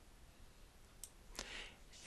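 Near silence, with two faint computer mouse clicks about a second in, close together.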